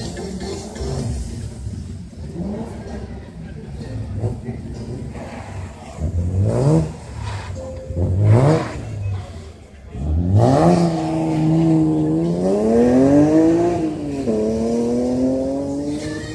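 Rally car engine revving hard, with two short rises and lifts, then about ten seconds in a long pull through the gears, the pitch climbing and dropping at each upshift.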